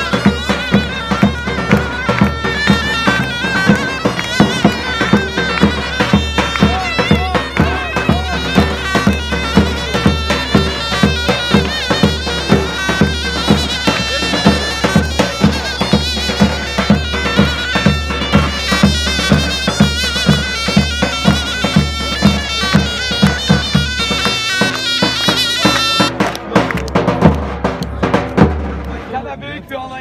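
Loud davul and zurna playing a folk dance tune: the zurna's wavering reed melody over steady, evenly spaced davul drum beats. The music breaks off about four seconds before the end.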